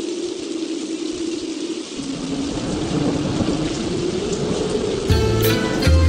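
Storm sound effect of steady rain with a low wavering tone beneath it. About five seconds in, backing music starts over it with a drum beat and bass.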